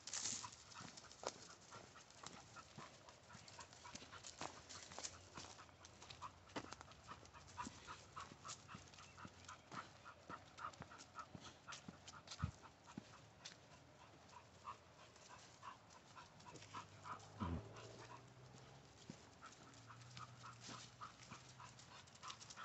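Faint, quick panting of an American pit bull terrier walking on a leash, in a steady rhythm, with light footsteps on a dirt trail.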